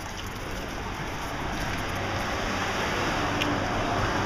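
Steady rushing street noise with no clear single event, swelling slightly in the last second.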